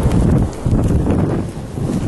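Wind buffeting the microphone: a loud, uneven low rumble that dips briefly twice, with a few faint knocks.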